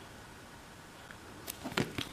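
Mostly quiet room tone. Near the end come a few faint clicks and taps as a cardboard box set is turned over in the hands.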